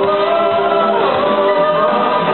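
Greek pop song performed live: a singer's long held notes over band accompaniment, with a slide in pitch about a second in, heard through a muffled audience recording.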